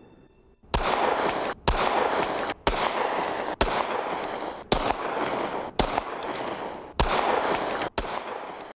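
A SIG Sauer P220-series semi-automatic pistol fired at a steady pace of about one shot a second, starting just under a second in. A long, rolling echo follows each shot and carries on until the next.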